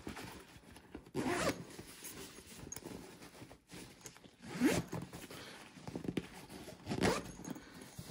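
Zipper of a Bagail compression packing cube being pulled along in a series of short zips, the strongest about a second in, near the middle and near the end. This is the cube's compression zipper being closed, squeezing the fabric cube smaller and thinner.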